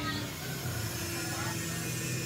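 Electric hair clipper running with a low, steady buzz, held near a freshly shaved head.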